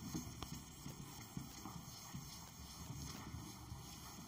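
Whiteboard duster wiping across a whiteboard: faint scrubbing strokes with a few light knocks.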